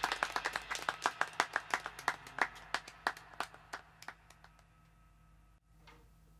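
Hand claps, several a second and unevenly spaced, growing steadily fainter and dying away about five seconds in.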